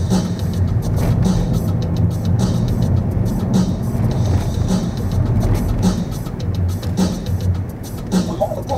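Music with a heavy bass plays inside a moving car's cabin over a steady low rumble of road and engine noise.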